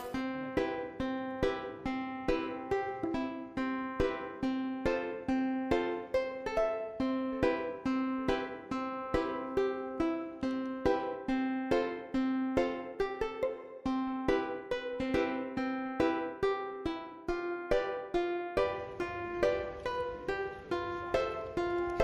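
Background music: a plucked string instrument playing a bright, even melody at about two to three notes a second.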